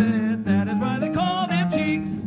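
Jazz vocal music: a singer's wordless melodic line moving quickly from note to note over a steady low accompaniment.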